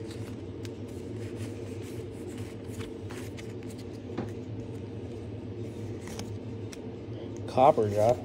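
Pokémon trading cards being handled and flipped through by hand: faint light clicks and slides of card stock over a steady low hum, with a voice starting near the end.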